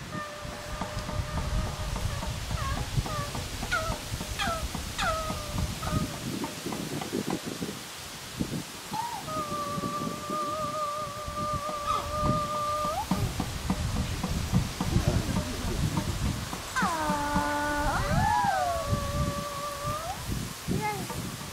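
High wailing tones that slide in pitch and hold with a slight wobble: short rising chirps in the first few seconds, a long held note in the middle, and a falling slide near the end, over a low rumbling noise.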